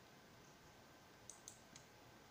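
Near silence: room tone, with three faint, quick clicks about a second and a half in.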